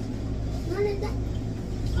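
A steady low hum, with a brief voice about a second in.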